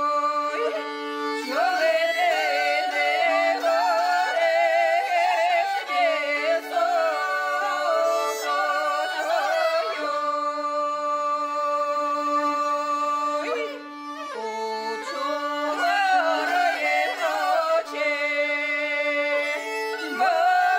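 Two women singing a traditional Ukrainian polyphonic folk song in harmony, accompanied by a fiddle. Long held notes alternate with ornamented, wavering passages, with a short dip in loudness about two-thirds of the way through.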